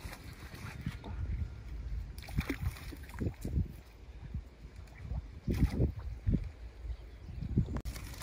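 Shallow river water sloshing and splashing as a person wades in at the bank, in several short, irregular splashes.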